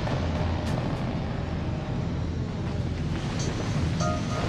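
Steady low rumble of explosions and bombardment laid over music, with a short pitched tone near the end.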